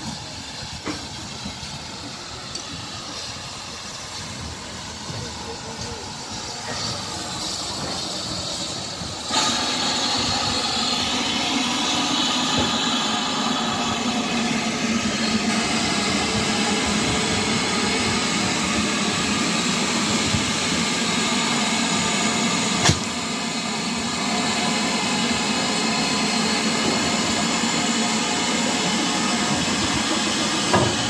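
Steam locomotive 7827, a GWR Manor-class 4-6-0, drawing into the platform, its sound slowly growing. About nine seconds in, a loud steady hiss of steam starts suddenly and carries on as the engine stands alongside, with one sharp click partway through.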